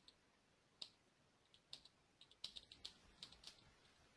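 Faint typing on a computer keyboard as a search term is entered: one keystroke just before a second in, then an irregular run of keystrokes through the middle and latter part.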